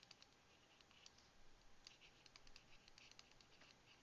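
Near silence with faint, irregular clicks and ticks of a stylus tapping and sliding on a drawing tablet as words are handwritten.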